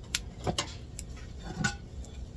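Several light clicks and clinks of kitchen utensils being handled at a stovetop, spread out over a couple of seconds, over a low steady hum.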